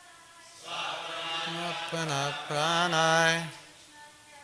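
A line of a Sanskrit verse chanted aloud to a slow, wavering melody. It is loud from about a second in until just before the end, with fainter chanting of the verse before and after.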